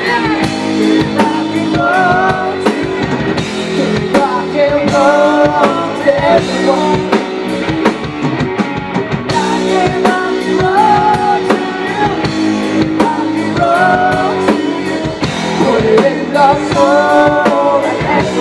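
Live rock band playing: a woman singing over electric guitar, bass guitar and a drum kit.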